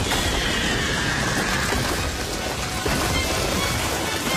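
Cartoon battle sound effects: a dense rushing, rumbling noise of fiery psychic energy, with a faint falling whine in the first two seconds, over dramatic background music.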